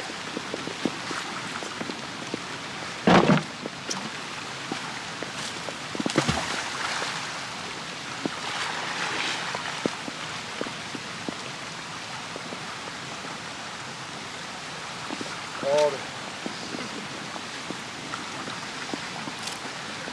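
Steady rush of a fast-flowing river with rain falling, broken by a heavy thump about three seconds in and another about six seconds in.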